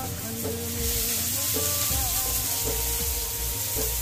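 Batter of ground fresh maize sizzling on a hot iron tawa as it is spread out with a spoon, the hiss growing stronger about a second in. A song with held, gliding notes plays over it.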